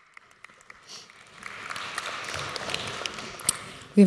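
Audience applause, starting with a few scattered claps about a second in, building to a steady patter, then thinning out near the end.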